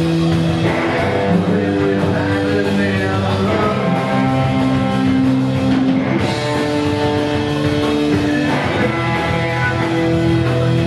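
A rock band playing live, with electric guitars and a drum kit. The guitar chords are held for a second or two each before changing.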